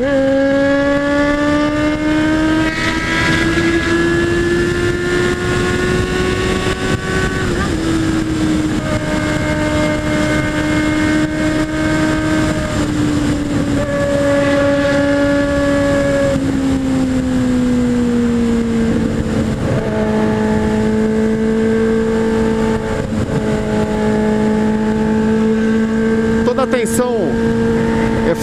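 Honda Hornet 600's inline-four engine cruising at highway speed, about 120 km/h, with heavy wind rush on a helmet-mounted camera. The engine note rises a little over the first several seconds, then eases down and settles lower about two-thirds of the way through.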